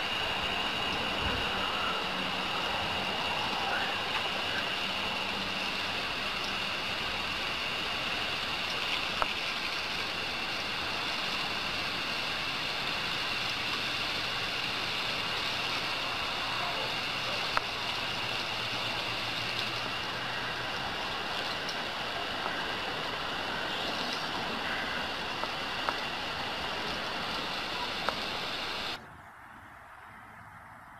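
Steady hiss of water from a garden hose spraying onto grass and wet pavement, with a few faint clicks. It drops away suddenly about a second before the end.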